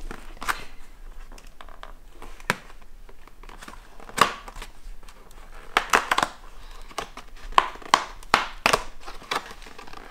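Stiff cardboard of an advent calendar crinkling and cracking under children's fingers as they press and pry at its small perforated doors: a scatter of short, sharp cracks, thickest in the second half.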